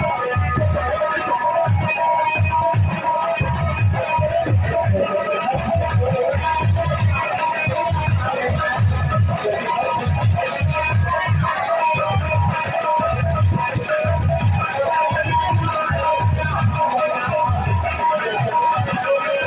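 Live kaharwa folk dance music played through a PA system: harmonium over a steady low drum beat of about two to three strokes a second.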